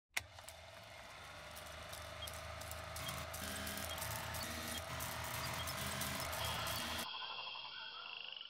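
Old film-projector sound effect: a steady running whirr with a held tone, crackle and scattered pops, slowly growing louder. It cuts off about seven seconds in to a thinner, different sound near the end.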